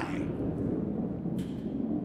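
A 40-pound granite curling stone sliding down a sheet of ice after being released, a steady low rumble.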